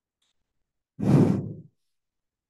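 A single loud breath blown out close to the microphone, about a second in and lasting well under a second.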